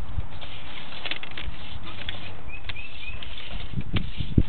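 Sewer inspection camera's push cable being fed down a drain line: a steady hiss with scattered clicks and knocks. Three short rising chirps come in the middle.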